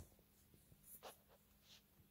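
Near silence: faint room tone with a low steady hum and a few very soft scratchy rustles.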